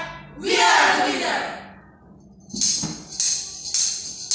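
A group of students singing a phrase that ends about a second and a half in; after a short pause a tambourine comes in, jingling in a steady rhythm of about three beats a second.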